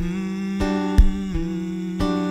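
A man humming a held, wordless melody over his own acoustic guitar, which is struck in a few sharp strums; the hummed note moves to a lower pitch partway through.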